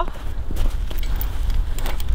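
A metal singletree and its chain handled and lowered onto snow, with a few faint clinks and footsteps over a steady low rumble.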